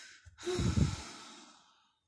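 A woman's breath in, then an audible sigh out lasting just over a second.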